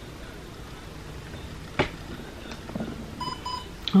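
A single sharp click or tap, then, near the end, two short electronic beeps in quick succession.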